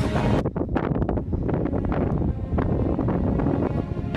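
Wind blowing on the microphone outdoors, a rough rumble broken by many short knocks and buffets.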